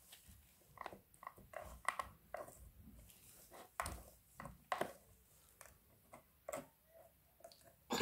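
Plastic spatula scraping and tapping against a plastic mold tray as damp powder mix is pressed and shaped into the molds. The sounds are quiet, short and irregular, a few each second.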